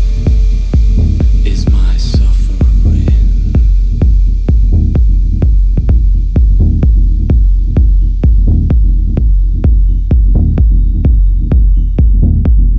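Techno in a DJ mix, pared down to a steady, deep kick-drum pulse with a low hum under it. A brief hissing noise sweep runs over it about two seconds in.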